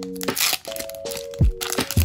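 Foil Pokémon booster pack crinkling and tearing as it is handled and opened, over background music with sustained notes and a deep drum beat about once a second.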